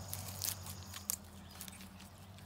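A goat biting and chewing fresh garlic greens held out by hand: a few short crisp crunches, the loudest about half a second in and another about a second in.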